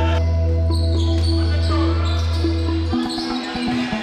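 A held, steady low musical chord that cuts off suddenly about three seconds in, followed by a basketball bouncing on a wooden court floor in quick, close-spaced knocks.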